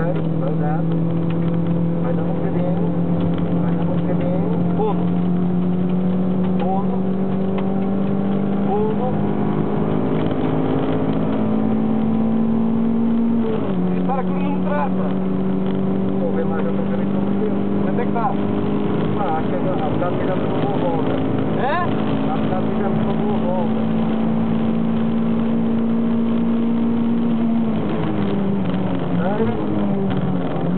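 Toyota MR2 MK2's mid-mounted four-cylinder engine heard from inside the cabin, pulling flat out with the revs climbing slowly. An upshift drops the pitch about halfway through, the revs climb again, and near the end they fall and waver as the car slows for a corner.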